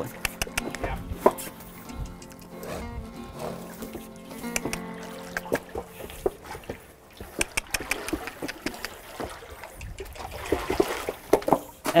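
Soft background music, with water splashing and sloshing as a yearling horse steps into a shallow splash pool.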